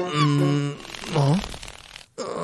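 Cartoon comedy sound effect: a low, buzzy tone held steady for about half a second, followed a moment later by a short rising-and-falling grunt-like sound.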